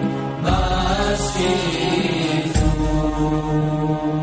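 Chanted vocal music: a voice holding long, steady notes.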